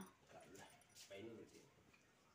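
Mostly near silence, with a faint, short vocal sound from a person about half a second in and another, slightly clearer one about a second in.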